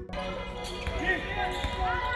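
Live basketball game sound in a sports hall: the ball bouncing on the hardwood court amid players' voices.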